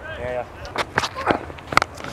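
A cricket bat striking the ball with a sharp crack near the end, after a few fainter clicks and knocks from the field; a short scrap of voice right at the start.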